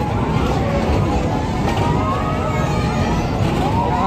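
Steady low rumble of a spinning car ride in motion, with people's voices and ride music over it.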